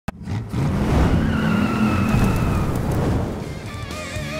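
A car engine revving hard with a tyre squeal, then electric guitar music begins near the end.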